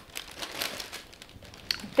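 Brown paper bag rustling and crinkling as freshly microwave-popped popcorn is poured out of it into a bowl. The rustle is strongest in the first second and then fades.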